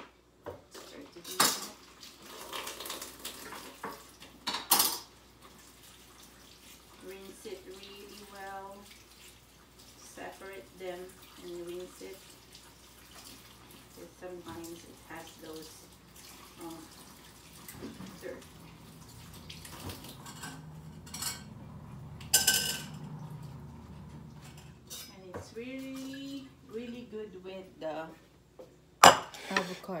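Kitchen clatter: dishes and metal utensils knocking together in a few scattered sharp clanks, the loudest near the end.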